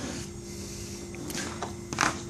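Faint handling noise: a few light clicks in the second half as a tiny quadcopter battery is picked up off a table, over a steady low hum.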